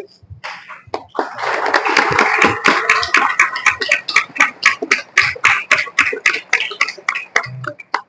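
A group of people applauding, a dense patter of hand claps that starts about a second in and dies away near the end.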